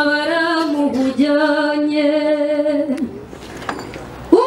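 A song: a woman singing long, held notes with little accompaniment. The voice breaks off about three seconds in.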